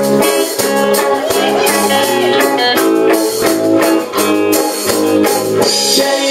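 Punk rock band playing live on stage at full volume: electric guitars, electric bass and drum kit, with steady drum hits under the chords. The singer's guitar sits low in the mix.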